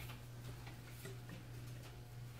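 Quiet meeting-room tone: a steady low electrical hum with faint, scattered light ticks and paper rustles as sheets of paper are handled.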